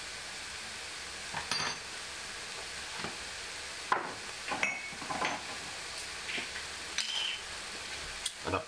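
Shredded stir-fry vegetables sizzling steadily in a stainless steel pan, with a few short clinks of metal utensils against the pan.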